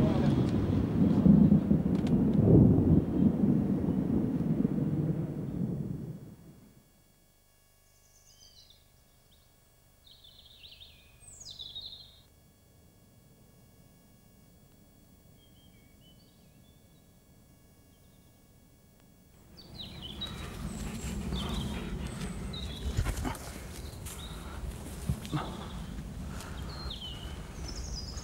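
Birds chirping in short, high calls in woodland. A steady low outdoor rumble comes in about two-thirds of the way through. The first six seconds hold a dense low rumble that fades out, followed by near silence broken only by a few faint chirps.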